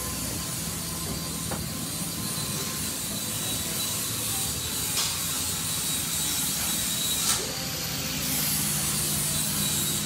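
Steady hiss with a low hum underneath, broken only by a couple of faint knocks.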